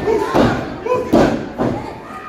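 A wrestling referee's hand slapping the canvas of the ring mat in a pin count: three heavy thuds, the last one weaker, with crowd voices shouting along.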